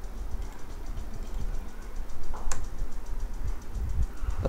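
Computer keyboard keystrokes, with one sharper key click about two and a half seconds in, over a steady low hum of background noise.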